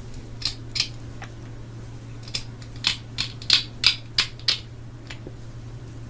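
Small hard plastic miniature parts clicking against each other as fingers handle and test-fit them: a few light clicks, then a quick run of about seven sharper clicks in the middle.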